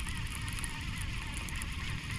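Baitcasting reel being cranked steadily as a lure is retrieved, with wind rumbling on the microphone.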